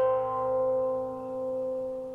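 Guqin (seven-string zither) notes ringing on after a pluck and slowly dying away, with no new note struck.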